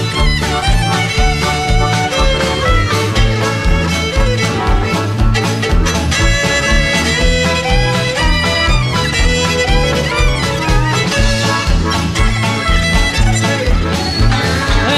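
Country band playing an instrumental break, a fiddle leading over guitar, bass and a steady, even drum beat.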